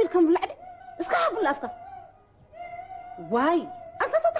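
A person's voice in three short bursts with sliding pitch, between them a steady held tone.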